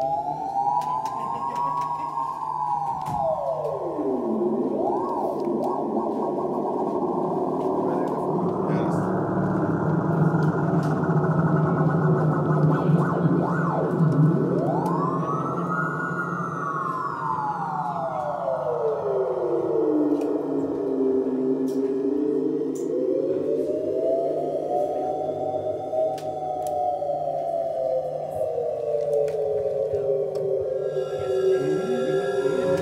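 RMI Harmonic Synthesizer run through an external ring modulator: a sustained, dense electronic drone. A tone sweeps slowly up and down over it like a siren, in several long swoops, and the drone steps up in pitch about eight seconds in.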